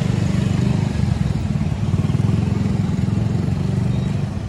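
A small motorcycle engine running close by, a steady low, rapid pulsing, over the general noise of street traffic.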